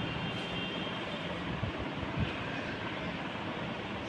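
Steady, even background noise with no distinct events, like a fan or motor running in the room.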